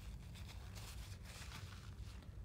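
Faint rustle of a paper laboratory tissue rubbing a small glass cuvette, over a low steady room hum.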